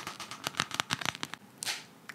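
Dried nail polish film being picked and peeled off a plastic yogurt lid with fingernails: a quick, irregular run of small crackles and ticks.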